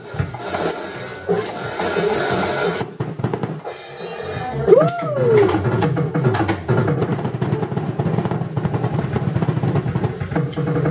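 Drum kit being played: loose hits for the first few seconds, then from about halfway a fast, steady run of drum hits. A short tone that slides up and back down cuts through about five seconds in.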